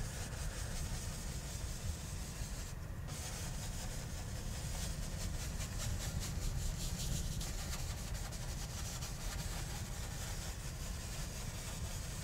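One-inch oil-painting brush rubbing and sweeping pure white paint across the canvas in quick, repeated strokes, a steady dry scrubbing sound.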